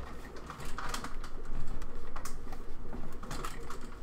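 Light fixture being moved and adjusted by hand: a run of irregular small clicks, taps and rattles.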